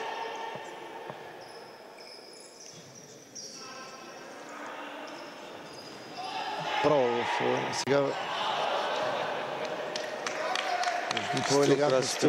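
Futsal game sounds on an indoor court: the ball being kicked and bouncing in sharp knocks, the busiest stretch in the last couple of seconds, with players shouting briefly a little past the middle.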